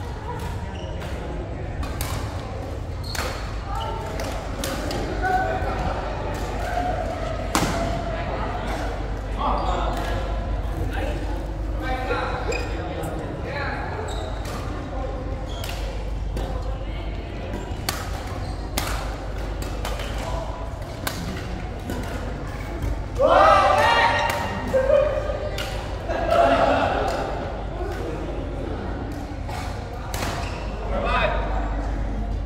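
Badminton rally: rackets striking a shuttlecock as sharp cracks every second or so, with people's voices and a steady low hum in a large hall. A loud call rises above the rest about three-quarters of the way in.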